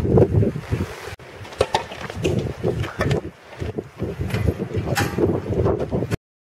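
Wind buffeting the microphone: an uneven low rumble that swells and dips, with scattered small clicks.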